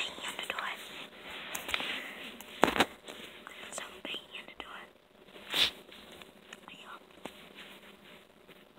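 Whispering, faint and broken, with scattered sharp clicks; the two loudest clicks come about three seconds apart, near the middle.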